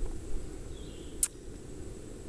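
Low steady rumble of outdoor background noise on the microphone, with one sharp click a little over a second in.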